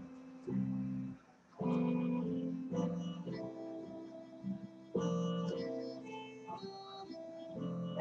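Guitar played live in the room: picked chords and single notes in short phrases, with a brief break a little over a second in.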